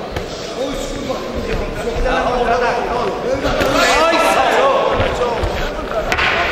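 Several voices shouting over a boxing bout, with a few dull thuds of gloved punches landing.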